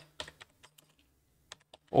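Computer keyboard typing: a few faint, scattered keystrokes, with a pause in the middle.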